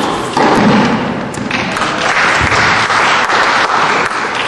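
A couple of sharp thuds of a tennis rally ending at the start, then spectators applauding with dense clapping from about a second and a half in.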